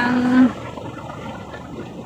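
A woman's drawn-out syllable, then about a second and a half of steady street background noise from distant traffic.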